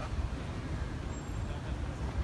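Low, steady outdoor rumble of city background noise, like distant road traffic.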